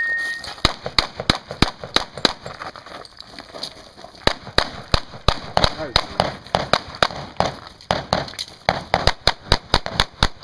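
Handgun fired in rapid strings of shots on a practical shooting course, dozens of sharp cracks a fraction of a second apart, with a brief lull around three to four seconds in.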